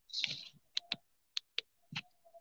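A short rush of noise at the start, then five sharp clicks scattered over the next second and a half, in the manner of keystrokes on a computer keyboard.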